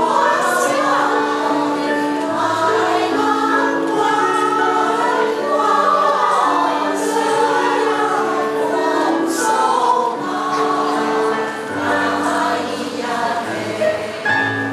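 Women's choir singing in several-part harmony, with long held chords that change every second or so.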